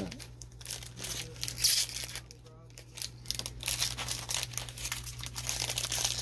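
Foil wrapper of a trading-card pack crinkling and tearing as it is handled and pulled open, in quick irregular crackles that ease off briefly in the middle.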